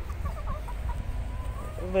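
A flock of domestic hens clucking faintly: a few short calls, then one longer, drawn-out call in the second half.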